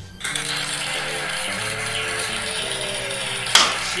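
Background music over a steady hiss, with one sharp knock about three and a half seconds in: a thrown knife striking the wooden target board.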